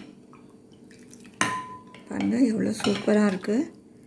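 A spoon stirring milk sarbat in a glass bowl knocks once against the glass about a second and a half in, giving a short clink that rings briefly.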